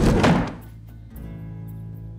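A heavy thunk as a person drops into a wooden armchair far too fast, ending about half a second in, followed by soft background music with sustained tones.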